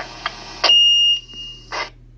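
Dispatch radio alert tone closing a fire department's last-call broadcast: a single loud, steady high beep lasting about half a second, followed near the end by a short burst of radio hiss.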